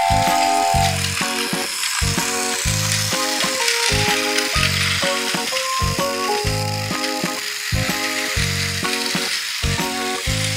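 Background music with a steady beat and melody, over the steady high-pitched mechanical whir of a battery-powered Plarail toy train running on plastic track.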